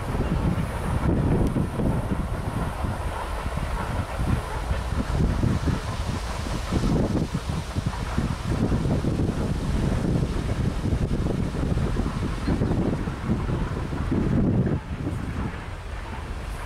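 Freight cars rolling past on the rails with a steady rumble, under repeated gusts of wind buffeting the microphone.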